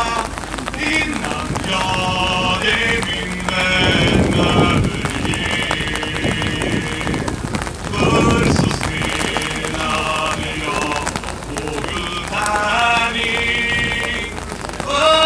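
A group of men chanting together in long, drawn-out calls, with two louder rough bursts about four and eight seconds in, over the hiss of steady rain.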